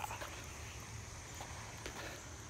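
Quiet outdoor background between shouts: a faint steady high hum and low rumble, with two faint ticks in the second half.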